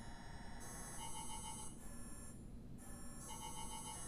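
Mobile phone ringtone: an electronic warbling ring that sounds twice, a couple of seconds apart.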